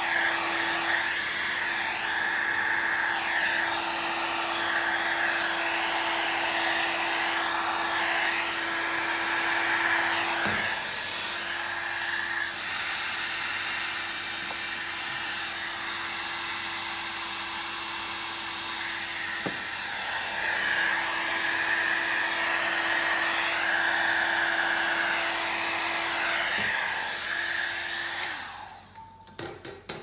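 Handheld electric heat gun blowing steadily, with a constant fan whine, pushing and drying alcohol ink across the painting surface. It cuts off shortly before the end.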